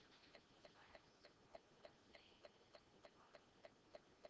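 Near silence with a faint, steady ticking, about three ticks a second.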